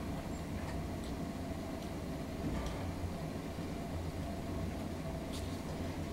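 Steady low room hum, with a few faint, short scrapes of a scalpel blade paring a callus on the sole of the foot.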